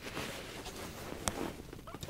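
Faint rustling of heavy winter clothing as a person shifts on a stool and leans forward, with one sharp click a little past halfway.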